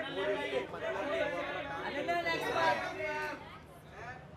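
Several people talking over one another in overlapping chatter, dying down about three and a half seconds in.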